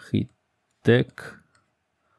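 A man's voice speaking two short words, with quiet pauses between and after.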